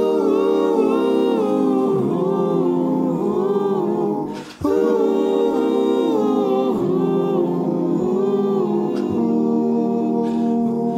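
Several men's voices humming wordless a cappella harmony in sustained chords that shift every second or so, with a brief dip about four and a half seconds in.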